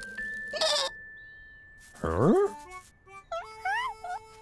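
A cartoon sheep's voiced bleats: one rising bleat about halfway through, then short wavering ones near the end, over a held high musical note.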